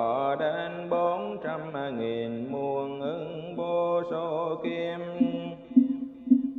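Buddhist chanting: a single voice holding long, slowly gliding notes over a steady low drone.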